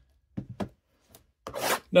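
Cardboard trading-card boxes handled on a tabletop: a few light taps, then a short scraping slide near the end.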